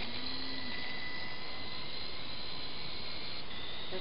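Syma S301G radio-controlled helicopter in flight: a thin, steady high-pitched motor whine over an even hiss, its pitch stepping slightly lower about three and a half seconds in.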